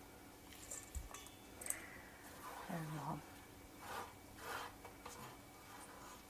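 Quiet room with a few faint rustling and handling noises, and a short murmured voice sound about halfway through.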